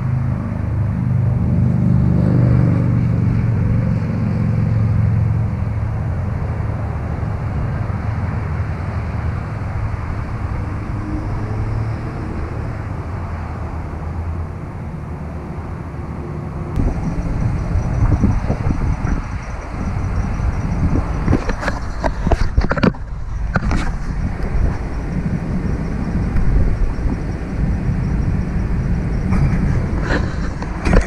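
Road traffic: a motor vehicle's low engine rumble swells over the first few seconds and slowly fades. About halfway through, the sound changes abruptly to a rougher, uneven noise with a run of sharp crackles and knocks.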